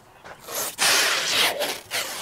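Plastic stretch wrap being pulled off its roll and around a stack of split firewood: a rasping hiss that starts about half a second in and lasts about a second and a half.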